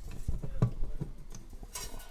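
Several light clicks and taps as strings and bridge pins are fitted into an acoustic guitar's bridge during restringing.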